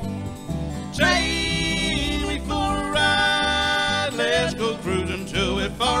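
A small acoustic country band playing live: acoustic guitar and upright bass, with long held notes between sung lines and a vocal line coming back in near the end.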